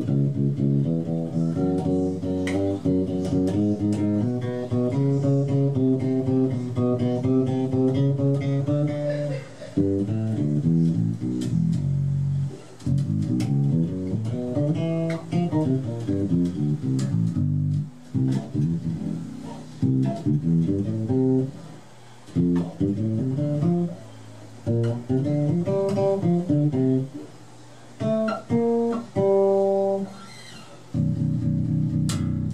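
Five-string DR Custom Basses Jona walnut bass guitar being played: a quick run of notes for about the first nine seconds, then rising and falling phrases broken by brief pauses, with a few higher ringing notes near the end.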